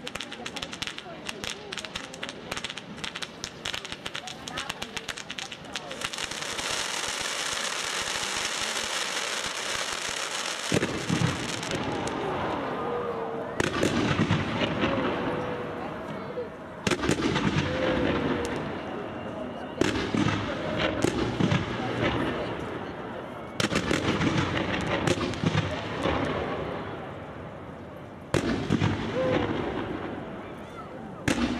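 Fireworks display: first a dense, fast crackling, then a steady hiss of fountains, then from about 11 s a run of loud bangs, each followed by a long fading tail.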